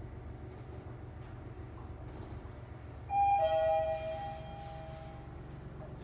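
Modernised 1977 Mitsubishi fireman's lift running down with a steady low hum; about three seconds in its two-tone arrival chime sounds, a higher tone then a lower one, ringing out and fading over about two seconds as the car reaches its floor.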